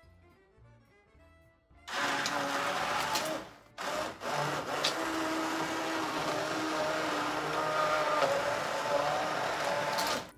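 Handheld immersion blender pureeing hot potato and asparagus soup in an enamelled pot. It switches on about two seconds in, stops for a moment, then runs steadily. The liquid is at about the minimum depth for the blender, so the soup splashes.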